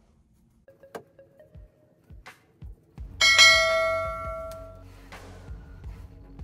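Background music starting up: a few soft notes, then a loud bell-like chime about three seconds in that rings and fades over a second and a half, followed by a steady low backing.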